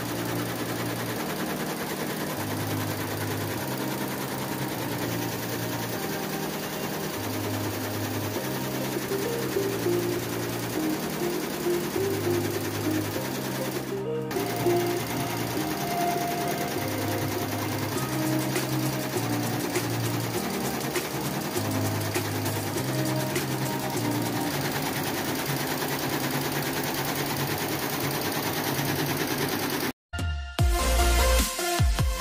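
Multi-head embroidery machine stitching at speed, a fast, even needle clatter that breaks off briefly about halfway, with background music playing over it.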